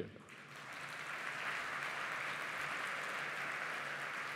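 A large seated audience applauding. The clapping builds within the first second and then holds steady.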